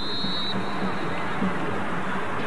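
Referee's whistle blown for kick-off, a single high note of about half a second at the start, over the steady noise of a stadium crowd.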